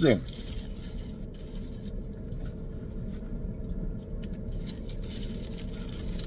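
Paper burger wrapper rustling and crinkling as it is pulled open by hand, over a steady low hum inside a car cabin.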